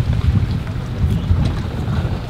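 Wind buffeting the camera microphone: a low, uneven rumble with no clear tone.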